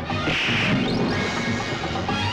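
Film background score playing, with one loud dubbed hit sound effect, a crash-like smack, about half a second in, followed by a brief rising swish.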